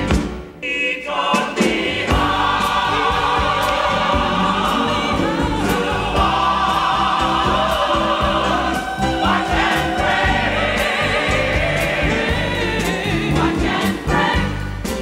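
Gospel choir singing, with a woman singing lead at a microphone; the voices hold long, wavering notes.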